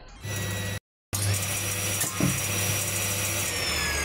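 Table-mounted circular saw running: a steady motor hum under a high blade whine that sags slightly in pitch near the end, with the sound cutting out completely for a moment about a second in.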